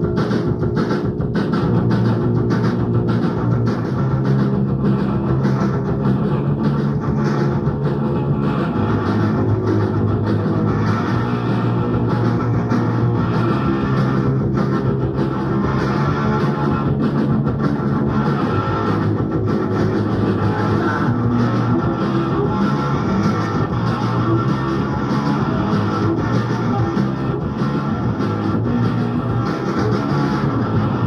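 A hardcore punk band playing live: distorted electric guitar, bass and drums going steadily without a break.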